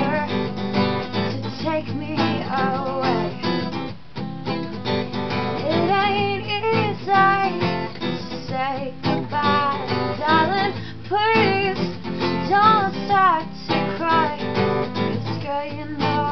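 A woman singing over a strummed acoustic guitar.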